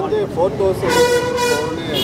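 A vehicle horn sounds once, a steady single-pitch honk of about a second starting about a second in, over a man talking.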